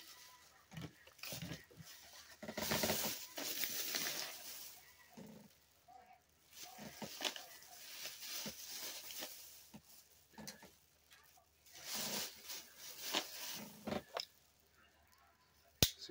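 Plastic bag rustling and crinkling as it is handled, in several short bouts, with a sharp click near the end.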